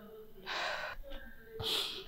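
Two short, sharp breaths, like gasps or sniffs from someone upset. The first comes about half a second in; the second, about a second and a half in, is higher and hissier.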